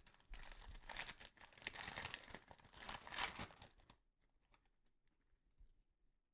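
Foil trading-card pack wrapper crinkling and tearing as it is opened, for about three and a half seconds, loudest near the end.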